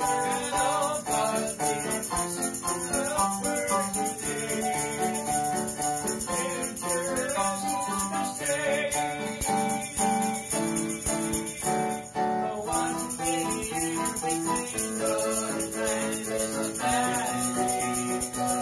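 An electronic keyboard plays a worship song in D, with a tambourine shaken in a steady rhythm over it. The tambourine drops out briefly twice, about nine and twelve seconds in.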